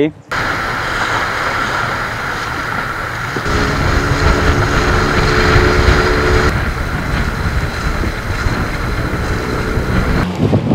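Boat motor running steadily with the rush of wind and water across the camera's microphone. The engine's pitched drone stands out more clearly from about three and a half to six and a half seconds in.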